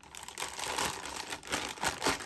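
Clear plastic bag crinkling in irregular bursts as a small power supply is slid out of it by hand, with a sharp crackle near the end.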